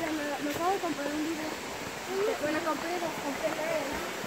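Indistinct chatter of several people's voices, overlapping, with a steady rushing hiss underneath.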